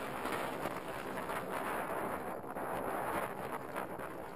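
Mountain bike riding over rocky, rooty singletrack: tyres rolling on rock and dirt with constant rattling from the bike, and wind rushing over the onboard camera's microphone.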